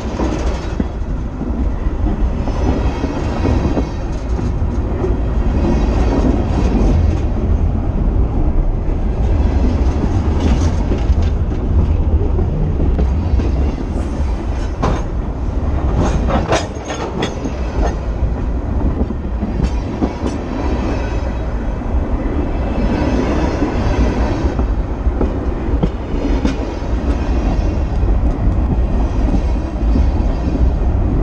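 Freight train cars rolling past right beside the rail: a constant low rumble of steel wheels on the track, with sharp clicks and clanks as wheel trucks pass, a cluster of them about halfway through.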